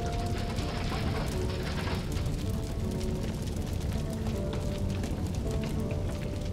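A burning house crackling and popping continuously, a dense patter of small cracks, with soft background music underneath.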